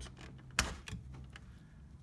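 Small plastic lever button snapping out of a blind's cord spool: one sharp click a little over half a second in, with a few faint ticks around it.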